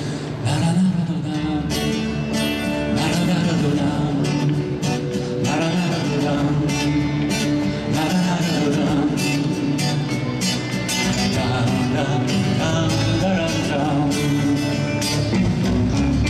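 A rock band playing live: a man singing over acoustic and electric guitars, hand drums and a drum kit.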